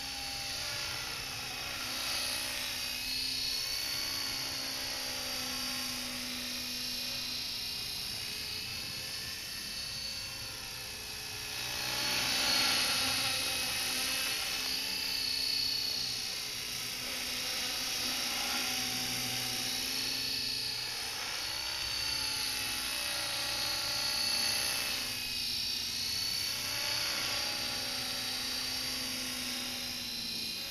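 Radio-controlled Guru Z model helicopter flying on 8-degree wooden rotor blades: a high whine over a lower rotor hum, its pitch wavering up and down as the heli manoeuvres. It grows loudest about twelve seconds in.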